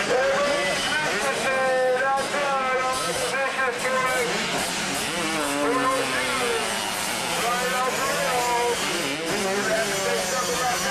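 Two-stroke motocross bikes revving hard as they ride the dirt track, the engine pitch climbing and dropping over and over as the riders work the throttle and shift through jumps and turns.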